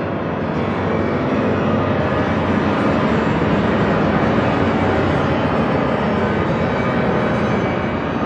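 Piano and bowed strings (violin, cello and a second upper string) playing a loud, dense, noise-like sustained passage that swells slightly and then holds steady.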